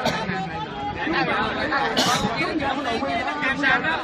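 Several people talking at once close by, overlapping chatter that runs without a break, with a brief hiss about halfway through.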